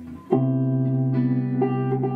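A guitar strikes a chord and lets it ring, with more notes added about a second in and again shortly after: a chord from the jazz progression (E7, E7♭9, Cmaj7) being demonstrated.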